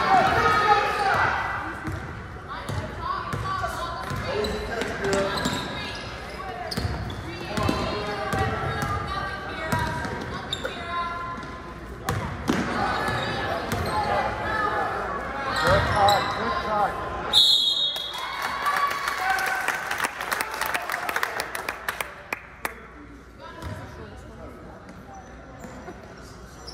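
Basketball game in a gym: talking and shouting from spectators and players, with a basketball bouncing on the hardwood court. There is a brief high-pitched tone about seventeen seconds in, and the voices drop near the end, leaving single bounces.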